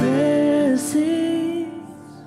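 Live worship band: a woman sings slow held notes over strummed acoustic guitar and bass. The music thins and drops away in the last half second or so.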